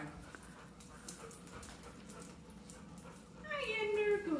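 Dog whining: a single high whine that slides down in pitch near the end, after a mostly quiet stretch.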